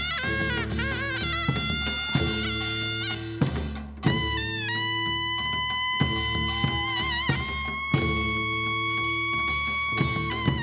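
Taepyeongso (hojeok), the Korean double-reed shawm, playing a Seoul–Gyeonggi-style melody over percussion accompaniment. Its ornamented wavering notes break off briefly just before four seconds in, and long, high held notes follow. Drum strikes are heard through it.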